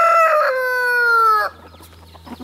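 Rooster crowing: a single crow whose last drawn-out note slides down in pitch and cuts off about one and a half seconds in.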